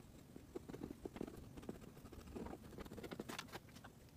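Faint, irregular scratching and crackling ticks of a soldering iron's hot tip being drawn through embroidered lace, melting and cutting it along the trimming's edge.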